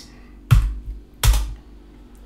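Two loud key presses on a computer keyboard, about three-quarters of a second apart, over a faint steady hum. They run the static site build command in a terminal.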